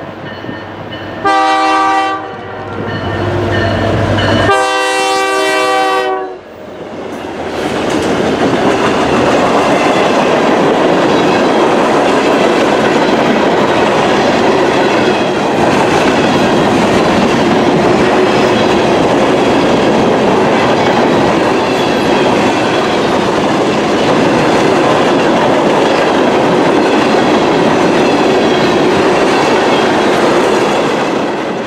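Locomotive horn on a Norfolk Southern local freight led by EMD yard switchers: one short blast about a second in, then a longer one about four seconds in. The train then passes close by, and a string of covered hoppers and tank cars rolls steadily past on the rails.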